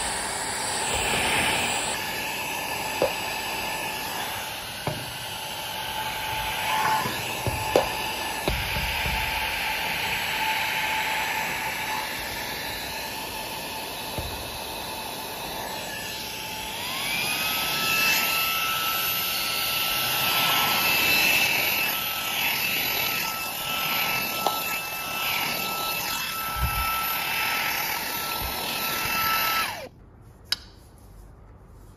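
Xiaomi Mi Vacuum Cleaner Mini handheld vacuum running, its brush nozzle working along a window sill track, with a few knocks. A little over halfway through it is switched from its lowest to its highest power setting: the motor whine glides up in pitch and gets louder, then it stops right at the end.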